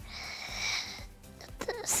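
A breath drawn in close to a lapel microphone, lasting about a second, followed near the end by a short 's' hiss as speech begins.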